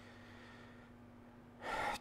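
Quiet room tone with a faint steady hum, then a short, sharp intake of breath through the mouth near the end.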